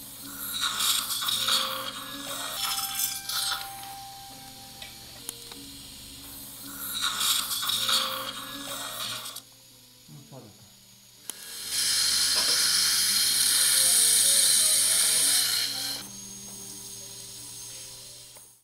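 Surgical suction aspirator hissing in bursts during oral surgery, loudest for about four seconds in the second half, over a steady low hum.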